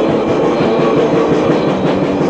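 Lo-fi raw black metal demo recording: a dense, distorted wall of sound with fast, even pulsing low down, muddy and with no clear notes.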